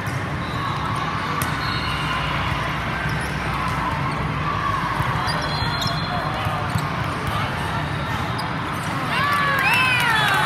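Volleyball rally in a large hall: voices of players and spectators over steady hall noise, with sharp smacks of the ball being hit. About nine seconds in, a louder burst of shouting and cheering breaks out as the rally ends in a point.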